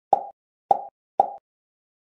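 Three identical short 'plop' pop sound effects about half a second apart, each a sharp pitched pop that quickly dies away, added in editing as photos pop onto the screen.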